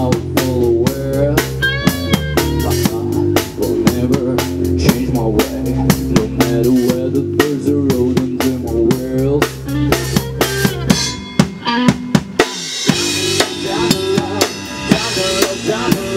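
Live blues-rock band playing an instrumental passage: drum kit with kick and snare hits, electric bass and electric guitar, a lead line gliding in pitch about two seconds in. About twelve seconds in the bass drops out for a moment, then the band comes back in with brighter cymbals.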